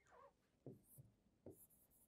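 Faint taps and scratches of a pen marking on a display screen, a few short strokes about half a second apart and then a brief scratch, as an answer is underlined and ticked.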